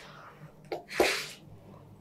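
A person sneezing once, a short sharp burst about a second in.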